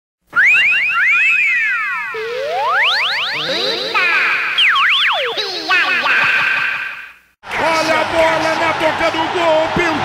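Electronic intro effect of quick, layered sliding tones that swoop up and down for about seven seconds, then cut off suddenly. A voice starts right after, over a steady background of held tones.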